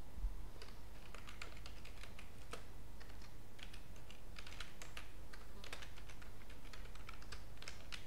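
Computer keyboard being typed on: quick, irregular keystrokes starting just under a second in, over a steady low hum.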